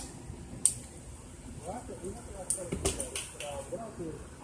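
Faint, indistinct voices in the background with a few sharp clicks: one loud click about half a second in and a cluster of smaller ones around three seconds.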